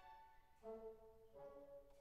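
Quiet orchestral background music: a brass line of held notes, changing pitch about half a second in and again past the middle.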